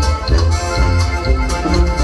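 Live norteño band playing dance music: sousaphone bass notes pulsing under a held accordion melody, with a drum-kit cymbal ticking about four times a second.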